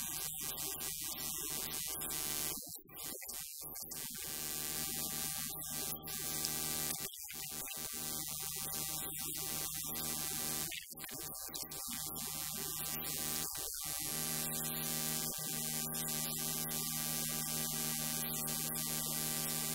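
Soft sustained keyboard or synthesizer chords under a steady hiss, the held chord changing about fourteen seconds in.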